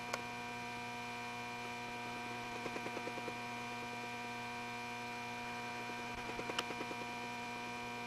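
Steady electrical hum made of several level tones. A sharp click comes just after the start and another about six and a half seconds in, with short runs of faint rapid ticking around three seconds and again near the second click.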